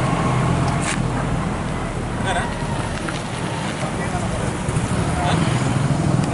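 Outdoor ambience of a small crowd: indistinct voices over a steady low engine hum and traffic noise.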